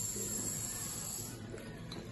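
Water running from a mixer tap into a washbasin and over a hand as a steady hiss, which dies away after about a second and a half.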